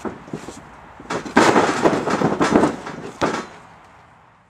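Wrestlers taking a bump in a wrestling ring: a few light knocks, then about a second in a loud crash of bodies landing on the mat that rattles on for over a second, and one more sharp thud near the end.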